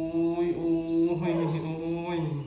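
A person's voice holding one long sung or chanted "ôi" note, steady in pitch.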